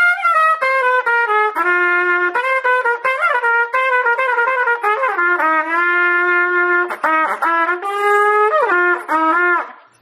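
Unaccompanied trumpet playing the G blues scale as a run of single notes, with a couple of notes bent down and back about two-thirds of the way through. The playing stops just before the end.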